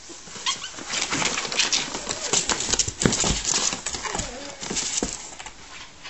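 A ferret scuffling with a person's hand inside a fabric play tent in a cardboard box: irregular bursts of rustling, scratching and sharp clicks, busiest in the middle and dying down near the end.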